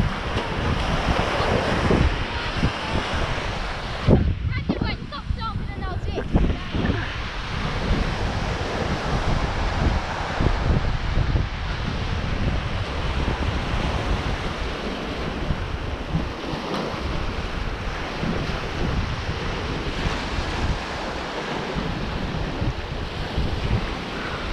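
Small waves breaking and washing up a sandy beach in a steady rush, with wind buffeting the microphone.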